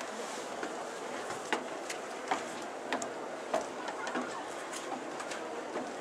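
Irregular light clicks and knocks from ropes and the metal fittings on a bell's wooden yoke being handled and tied off, over a steady outdoor background hiss.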